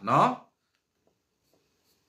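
A man's voice ends a word in the first half-second, followed by a pause of near silence.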